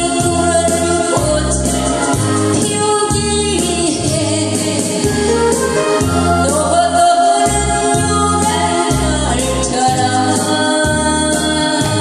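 A woman singing a Korean trot song into a handheld microphone over instrumental accompaniment with a steady bass beat.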